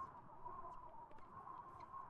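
Very faint background noise with a thin, steady high-pitched tone running through it.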